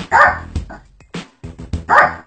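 A small dog barking twice, about a second and a half apart, over background music with a steady beat.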